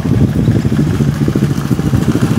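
Quad bike (ATV) engine running at low speed as the quad rolls up close, with a steady, even low pulsing.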